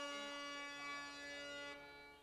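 A harmonium holding a steady chord that slowly dies away, its upper notes fading out near the end.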